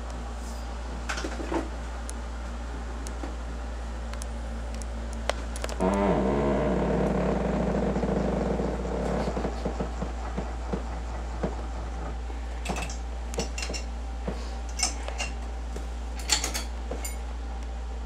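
Clicks and metallic clinks of a wall-mounted patient lift's jointed metal arm being handled and swung, densest in the last third, over a steady low hum. A fuller, louder sound lasts a few seconds from about six seconds in.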